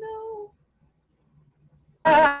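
A voice holds a single note for about half a second, then stops, leaving near silence.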